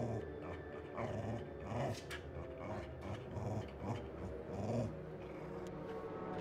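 A dog giving short low vocal sounds, about one a second, over a steady low drone.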